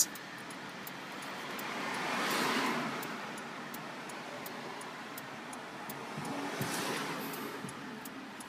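Traffic noise heard from inside a car: a steady hum of road noise, with one vehicle swelling past about two and a half seconds in and a fainter one near the end. A few faint ticks sound over it.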